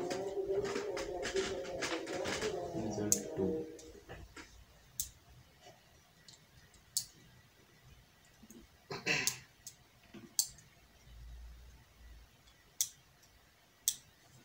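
A voice for the first three or four seconds, then single sharp clicks at a laptop, one every second or two, spaced unevenly.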